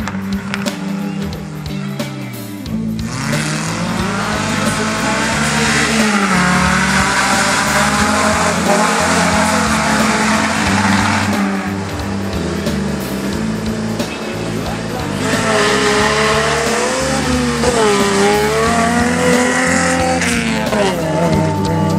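Rally car engines revving hard, their pitch rising and falling, getting louder about three seconds in, with music playing underneath.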